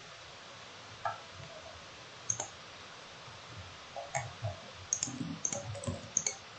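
Computer mouse clicking: a few separate clicks, then a quick run of clicks near the end.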